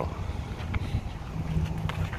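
Low, uneven rumble of wind buffeting the microphone, with a couple of faint clicks.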